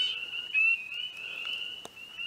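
Spring peepers calling: several short, high, rising peeps overlapping in a thin chorus. There is a single faint click near the end.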